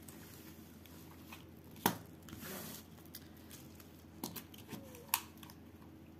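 Quiet handling of a cloth tape measure on stiff printed cross-stitch canvas: one sharp click about two seconds in, a brief rustle right after, then a few lighter taps.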